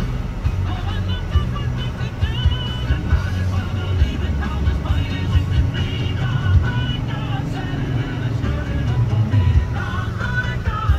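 Music playing on the car radio inside the cabin of a slowly moving minivan, with engine and road rumble underneath.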